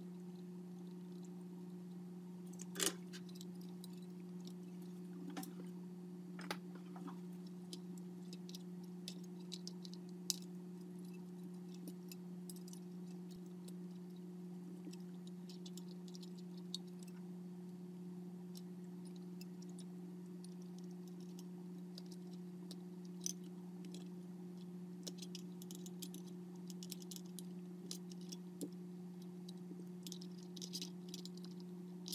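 Scattered small clicks and taps of pliers and small metal tools working on wiring and a circuit board, the sharpest click about three seconds in, over a steady low hum.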